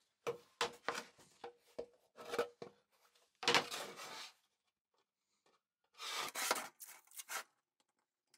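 A thin sheet of board being handled on a wooden worktop: a run of light knocks and taps, then a scrape about three and a half seconds in as the sheet slides across the surface, another scrape about six seconds in, and a few small clicks near the end.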